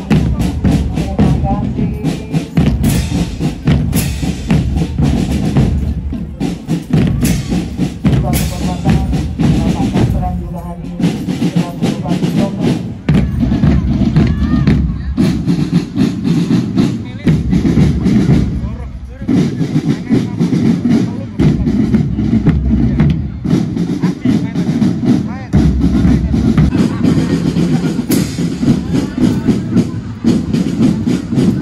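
Marching drum band playing: big bass drums, snare drums and cymbals beating out a fast, steady rhythm, with short breaks around ten and nineteen seconds in.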